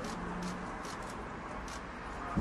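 Steady outdoor background noise with faint, irregular high ticks or chirps and a faint low hum in the first half-second or so.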